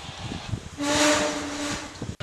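Olive ridley sea turtle breathing out hard as it surfaces in a tub of water: a loud hiss about a second long with a low hum running through it, starting a little under a second in.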